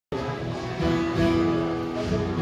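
Live band playing on stage, guitars out front, with a guitar note held steady from just under a second in.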